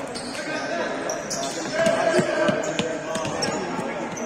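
Indoor futsal play in an echoing sports hall: shoes squeaking on the court floor, the ball being kicked and bouncing, and players shouting, loudest about two seconds in.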